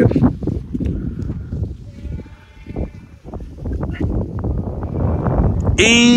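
Irregular low rumbling and buffeting, like wind on the microphone or handling of a walking camera, with faint bleating of farm livestock about two to three seconds in.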